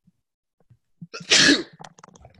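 A man sneezing once, a short loud burst about a second and a half in, after a quick intake of breath.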